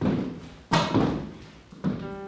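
Footsteps on a hard floor: three loud steps at a slow walking pace, each with a short echo.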